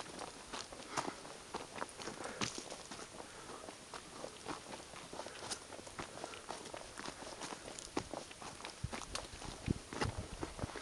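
Footsteps on a loose, stony dirt trail: irregular crunches and clicks of stones and dry debris underfoot as someone walks, with a few low bumps near the end.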